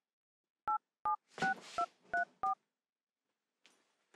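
Telephone keypad dialing: six short two-tone key beeps in quick succession, about a third of a second apart, as a number is punched in.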